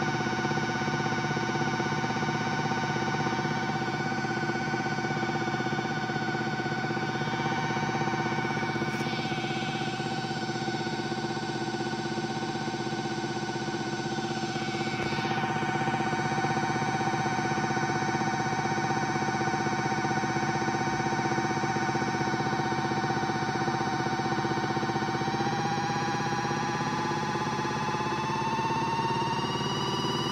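Small electric motor of a Miele W1 toy washing machine whining steadily as the drum turns in the wash, its pitch rising over the last few seconds as it speeds up.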